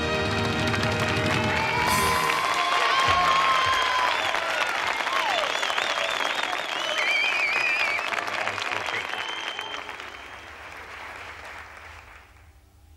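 The held final chord of a song sung by a male vocal trio with band ends about two seconds in. A studio audience then applauds, with whistles, and the applause dies away near the end.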